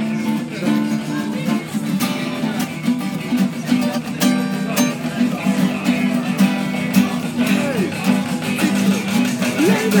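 Two acoustic guitars being strummed and picked together, playing chords.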